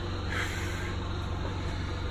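Generator engine running steadily, a low even drone, with a brief rustle about half a second in.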